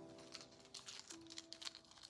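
Faint small clicks and rustles as a long pendant necklace is unclasped and its chain handled, over quiet background music.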